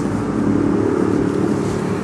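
Steady hum of a Toyota Yaris idling, heard inside the cabin with the air conditioning on.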